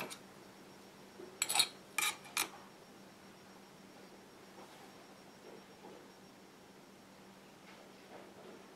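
Three light, sharp clicks close together, a clay-cutting blade tapping a hard work surface as a thin strip of polymer clay is trimmed, over a faint steady hum.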